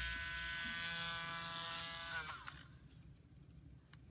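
Battery-powered Dremel rotary tool with a drill bit running with a steady whine. About two seconds in, its pitch falls as the motor winds down and stops.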